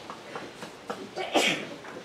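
A person's short, breathy vocal burst about one and a half seconds in, against faint background sounds.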